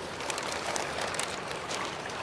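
Steady trickle of water in a koi pond, with light splashing and dripping at the surface where a koi lies in a net.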